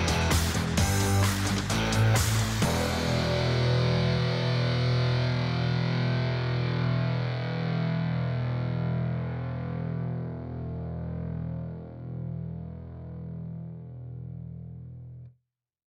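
Rock background music with distorted electric guitar and a beat. About three seconds in, it stops on a final chord that rings on and slowly fades, then cuts off sharply near the end.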